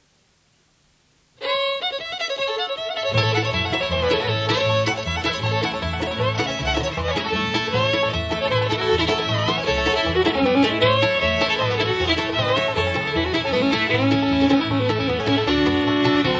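Bluegrass fiddle tune: after about a second and a half of near silence the fiddle starts the tune alone, and about three seconds in the bass and guitars come in under it with a steady beat.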